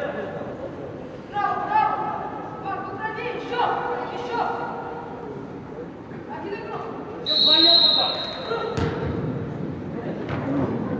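Referee's whistle blown once, a steady shrill blast of about a second, echoing in a large indoor sports hall. About a second and a half later comes a single sharp thud of a football being kicked. Shouting voices come earlier.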